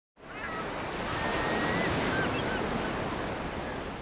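Ocean surf washing in a steady rush that fades in right at the start and begins dying away near the end, with a few faint high calls over it.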